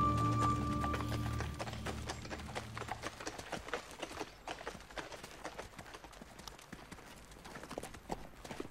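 Donkey's hooves clip-clopping at a walk on a dirt road, mixed with the footsteps of people walking alongside. Background music fades out over the first few seconds.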